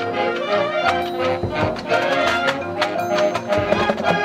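A marching band playing: sustained brass chords over repeated percussion strikes.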